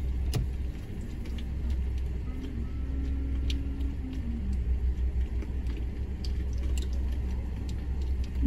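Low, steady idling rumble of vehicle engines heard from inside a stopped car, with a few faint clicks.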